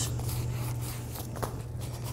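Faint scuffing of hands pressing and rubbing along foam carpet padding over a steady low hum, with a single small click about one and a half seconds in.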